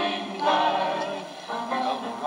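Small mixed church choir of men's and women's voices singing together, holding long notes.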